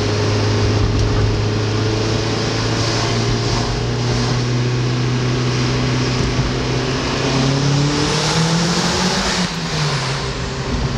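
Turbocharged 1.8-litre four-cylinder of a Mazdaspeed Miata, with an aftermarket intake and catless downpipe, heard from inside the cabin pulling in second gear. The revs climb slowly, then rise quickly about eight seconds in and drop off sharply as the throttle is lifted near the end.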